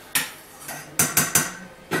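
Dishes and pots clinking: about five sharp clinks, three of them in quick succession about a second in.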